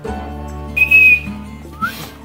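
A loud, high whistle held steady for about half a second, then a short upward whistle near the end, over background music.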